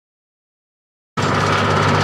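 Dead silence, then about a second in a Maserati Merak's V6 engine cuts in abruptly, running steadily as the car drives.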